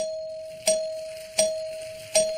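Game-show letter-reveal chime: a single bell tone struck three times, evenly about 0.7 s apart, each note ringing on and fading.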